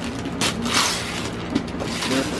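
Wrapping paper being ripped off a cardboard gift box: a noisy tearing burst about half a second in, lasting about half a second, then lighter paper rustling.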